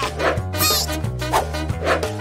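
Background music with a steady bass line and short plucked hits, with a brief high yipping squeak about half a second in.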